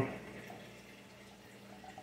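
Faint trickle and drip of circulating water from a running saltwater reef aquarium.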